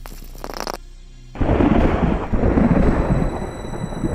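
A thunderclap that breaks in suddenly about a second and a half in and rolls on as a loud, low rumble, over faint music.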